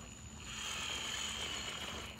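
Motor-on-axle RC rock crawler's electric drive motors and gears whining steadily under load as it climbs a rock face, starting about half a second in.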